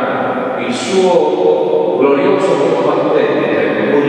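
Speech only: a man's voice talking continuously, a priest preaching a homily.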